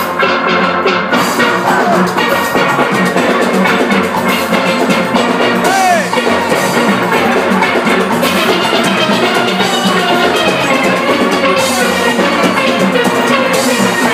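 A steel orchestra playing at full volume: many steelpans ringing out a fast, busy melody and chords together over a percussion beat.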